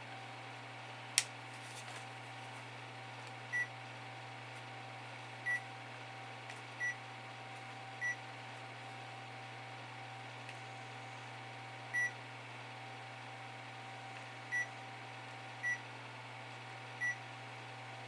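Digital multimeter giving short, high beeps, eight of them at irregular intervals, as it is set to its capacitance range. A single sharp click comes about a second in.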